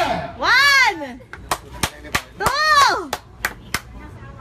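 Two long, drawn-out shouts, each rising then falling in pitch, about two seconds apart. Between and after them come about seven sharp claps.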